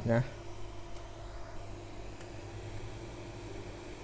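Hot-air rework station blowing, a steady even hiss with a faint low hum, as heat is put on the iPhone XR logic board to lift off a shorted capacitor.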